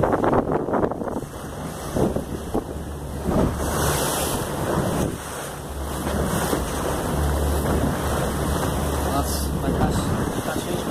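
Wind buffeting the microphone over the wash of the sea, in irregular gusts, with a steady low rumble underneath that swells in the second half.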